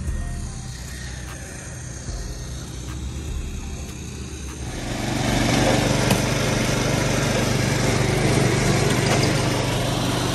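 Small petrol engine of a mortar mixer running steadily, much louder from about five seconds in, while stucco mud slides out of the tipped drum into a wheelbarrow.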